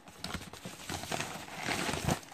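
Paper mailer packaging rustling and crinkling as it is handled and a small cardboard box is pulled out, with scattered small clicks of handling, growing louder near the end.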